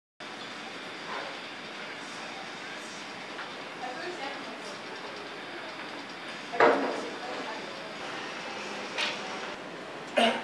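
Steady room hum with faint, indistinct voices, and a brief louder sound about two thirds of the way through.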